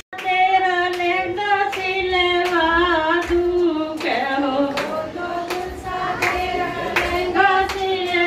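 A woman singing into a microphone, holding long wavering notes, with steady hand-clapping in time.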